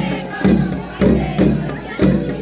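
A deep drum beating a steady march rhythm of a little under two strokes a second, over the voices of a large crowd of marchers.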